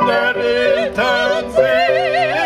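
Operatic singing with wide vibrato over steady held lower notes, loud throughout with a brief dip about three-quarters of the way in.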